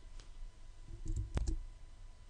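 A single sharp computer mouse click about a second and a half in, with a faint low thump just before it.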